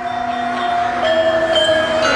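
Javanese gamelan ensemble playing: several held, ringing metallophone notes sound together as the sound fades in, with the pitches changing about a second in.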